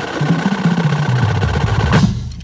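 Marching drumline playing a loud sustained roll warm-up: snare rolls over low bass drum notes that step in pitch. The ensemble cuts off together at the very end and rings out briefly.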